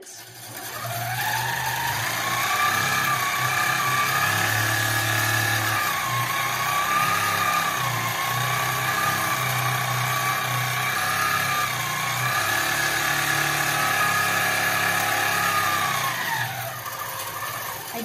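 Handi Quilter Fusion longarm quilting machine stitching a straight horizontal line in stitch-regulated precision mode. Its motor whine rises as the machine gets under way, wavers slightly in pitch as the hand-guided speed varies, and winds down near the end as the machine stops.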